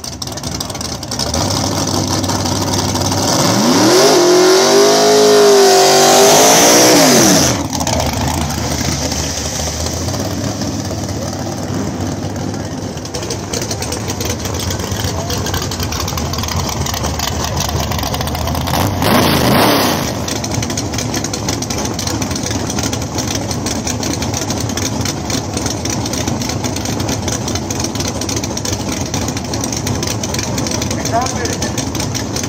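Drag race car engines running loudly at the line, with one hard rev that climbs and falls about four seconds in and cuts off suddenly a few seconds later, and a second short rev near the twenty-second mark.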